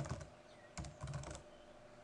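Faint typing on a computer keyboard: a few quick runs of keystrokes.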